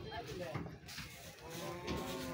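A cow mooing: one long, steady call that begins near the end.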